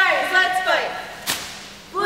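Cheerleaders shouting a cheer together, with a single sharp smack about 1.3 seconds in.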